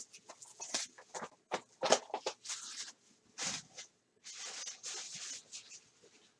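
A cardboard trading-card hobby box being handled and opened by hand: a run of sharp clicks and taps with two longer stretches of scraping, rustling cardboard or wrapper.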